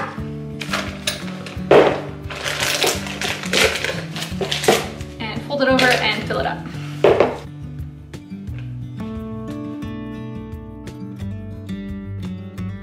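A plastic piping bag crinkling and an icing spatula scraping and clattering against a glass cup as buttercream is loaded into the bag, in irregular bursts for the first seven seconds or so. Background acoustic music plays under it and carries on alone afterwards.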